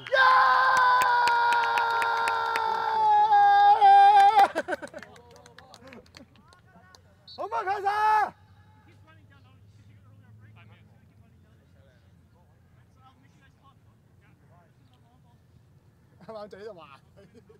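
Loud, drawn-out shouting from a man's voice close to the microphone: a long held yell through the first few seconds, then a shorter one falling in pitch about seven seconds in. After that, only a faint open-air background with faint distant voices.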